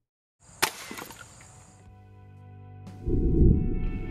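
A break-barrel .25 calibre air rifle firing once: a single sharp report about half a second in, followed by a few fainter ticks. Background music then fades in and grows loud over the last second.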